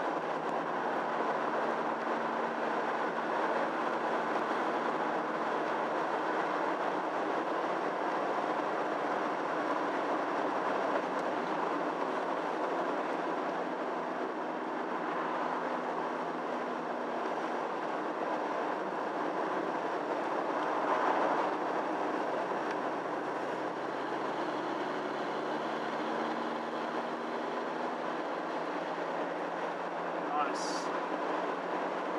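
Steady in-cabin drone of a 1.9-litre diesel car on the move: engine hum mixed with road and tyre noise, with a brief swell about two-thirds of the way through.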